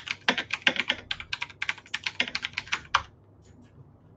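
Typing on a computer keyboard: a quick run of keystrokes entering a web search, stopping about three seconds in.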